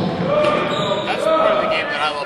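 A man's voice in a large gymnasium hall, with a few sharp knocks from the court mixed in.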